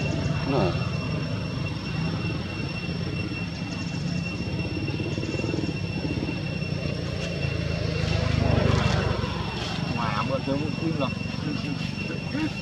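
Outdoor background sound: a steady low engine-like rumble with two thin steady high tones, and faint voices of people talking now and then, swelling about eight to nine seconds in.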